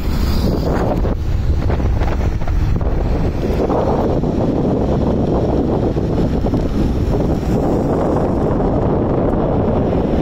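Wind buffeting the microphone, a loud steady rumble, with highway traffic passing below.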